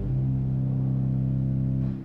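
C. B. Fisk pipe organ holding a low, sustained chord with deep pedal notes, which is released near the end.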